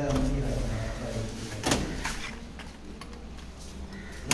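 A sharp metallic clack from a steel door's lever handle and lock mechanism being worked, followed by a few lighter clicks.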